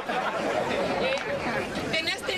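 Speech: one voice talking continuously, with crowd chatter behind it.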